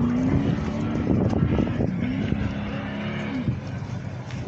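Off-road race truck engine running hard along the course, its pitch rising and falling over a rough, steady rumble.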